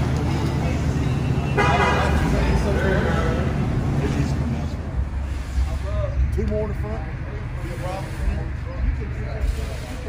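Chevrolet S-10 pickup's engine running at low speed as the truck pulls out, with a short horn toot about a second and a half in. Voices talk in the background in the second half.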